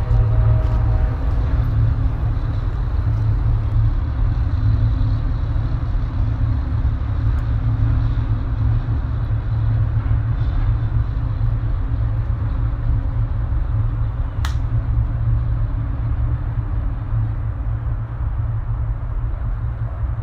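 Steady low rumble throughout, with a single sharp click about fourteen seconds in.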